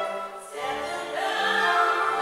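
A woman singing in classical style with vibrato, accompanied by strings with sustained low notes. The music dips briefly just before half a second in, then a new sung phrase begins.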